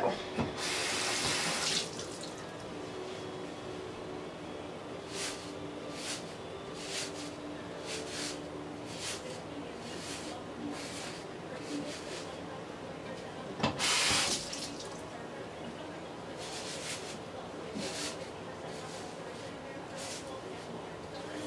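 Bathroom sink tap running briefly twice, once about half a second in and again about fourteen seconds in. Between them, a paddle hairbrush is drawn through damp hair in short, soft strokes.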